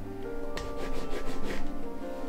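Paint roller rubbing and rasping across a canvas as acrylic paint is rolled on, over background music.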